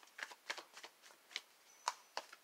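A tarot deck being handled: faint, light card snaps and rustles, about six in two seconds, the sharpest near the end.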